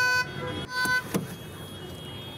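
Car horn honking twice in street traffic: a long blast that stops about a quarter second in, then a short toot about a second in, followed by a sharp click over the traffic noise.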